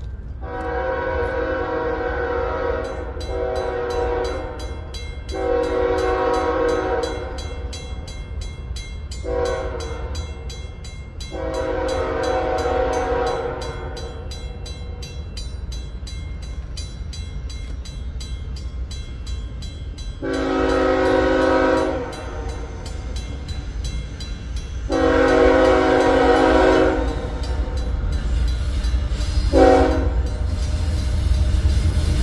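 An approaching Iowa Interstate locomotive sounds its air horn for a grade crossing in a series of long and short chord blasts. The crossing bell starts ringing a few seconds in and keeps ringing under the horn, over a low rumble from the oncoming train.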